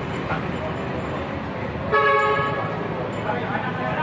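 A vehicle horn honks once, a short blast of about half a second, about two seconds in, over the steady noise of a city street. Voices come in near the end.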